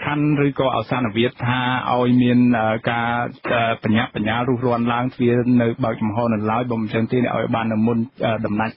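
Speech only: a man talking continuously in Khmer, sounding narrow like a radio broadcast.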